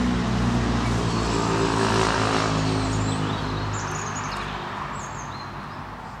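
A low, steady engine-like drone made of several even tones starts suddenly, swells over about two seconds and then slowly fades away. Short high bird chirps sound above it in the second half.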